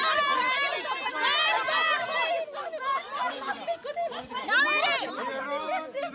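Several people talking over one another, with one voice raised high and loud for a moment about four and a half seconds in.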